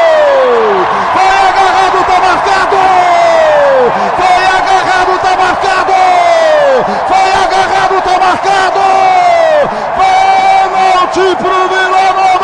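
A radio football commentator's long, drawn-out goal shout, held on one high note over stadium crowd noise. Every few seconds his voice slides down in pitch as he runs out of breath, and then he picks the note up again.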